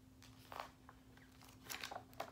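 A page of a picture book being turned: a few faint, brief paper rustles, one about half a second in and a cluster near the end.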